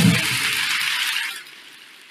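End of the TED talk intro sting: the beat and bass stop right at the start, and a high, bright wash of noise fades away by about a second and a half in.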